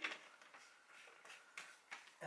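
Faint handling of a plastic spray bottle as its trigger head is screwed back on: a sharp click at the start, then soft rustling and a few small ticks.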